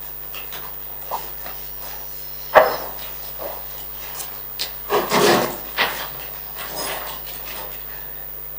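Handling noise as someone settles at a meeting table: a chair being moved and papers rustling, with one sharp wooden knock about two and a half seconds in and a longer rustle around five seconds, over a faint steady room hum.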